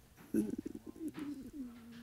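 Faint cooing of a dove: a low, wavering coo that ends in a short held note.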